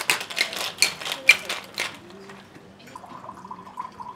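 Ice rattling fast in a cocktail shaker for about two seconds. About three seconds in, a thin stream of cocktail begins pouring into a glass with a steady, wavering tone.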